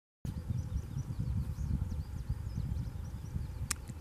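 Outdoor evening ambience: a low, uneven rumble with faint, high bird chirps repeating through the first three seconds. A single sharp click sounds near the end.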